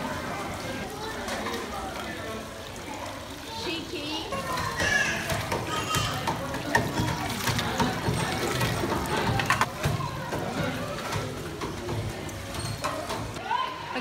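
Children playing at a water-play table: water running and splashing, short knocks of plastic toys against the metal basin, and children's voices.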